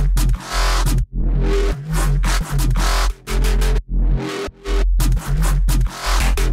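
Electronic dubstep-style bass line with a heavy sub-bass, playing in loud, chopped phrases broken by brief gaps. It runs through an EQ that gives the sub end a gentle boost, rolls off the ultra-low end and applies dynamic cuts to the harsh low-mids.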